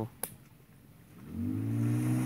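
Small outboard motor pushing an inflatable boat, coming in about halfway through as a steady hum that rises a little in pitch and then holds.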